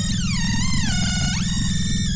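Electronic logo-intro music: a synthesizer tone that glides downward, levels off, then swoops back up, over a dense pulsing bass.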